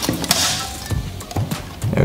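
Handling noise from the Godox SL60W light and its metal dish reflector as they are turned in the hands: scattered clicks and clinks, with a brief scrape about half a second in, over soft background music.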